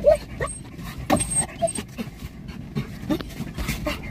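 A dog whining and yelping in short, high, excited cries, about five of them, over the low rumble of a slow-moving car.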